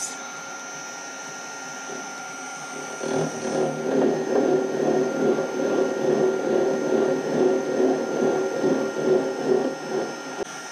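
A milling spindle runs steadily. About three seconds in, a gear cutter starts cutting a tooth space in the metal gear blank, a louder, rough, uneven cutting noise that goes on almost to the end.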